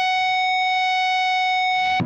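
Ibanez RG320 electric guitar through a Roland Cube 30X amp, sustaining one high note, F♯ at the 14th fret of the high E string, held steady and ringing out as the last note of a lick.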